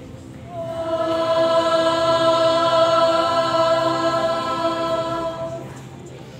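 Melodicas and recorders holding a single sustained chord for about five seconds. It comes in about half a second in, swells, and dies away near the end.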